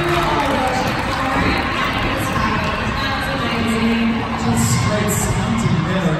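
Crowd of spectators cheering and calling out: a steady din with scattered shouting voices.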